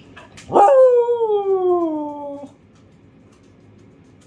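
Siberian husky giving one long 'awoo' howl: it rises sharply about half a second in, then slides slowly down in pitch for about two seconds before stopping.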